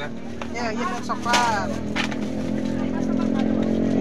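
A motorcycle engine running steadily and growing louder as it approaches, over people talking in the first half.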